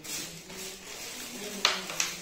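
Plastic carrier bags rustling as groceries are rummaged out of them, with one sharp knock near the end.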